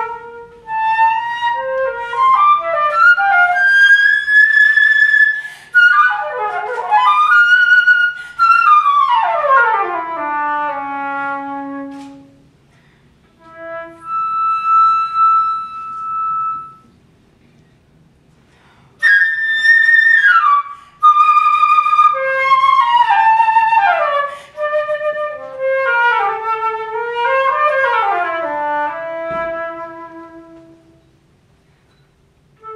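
Solo concert flute playing a flamenco-style étude: fast runs and long sliding falls in pitch, a sustained high note about midway, with two short pauses between phrases.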